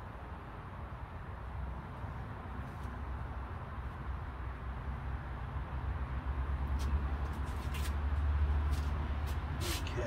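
A low rumble that grows louder in the second half and then eases off, with several short, sharp clicks near the end.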